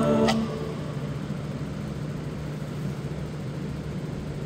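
The song's last held note stops about half a second in with a short click, leaving a steady low hum and background noise.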